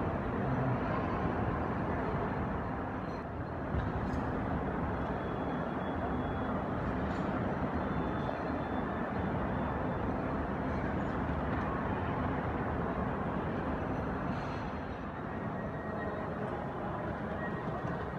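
Steady background din of a busy airport terminal hall, with indistinct voices in the distance.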